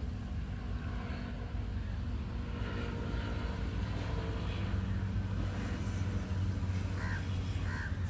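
Short bird calls, brightest twice near the end, over a steady low rumble.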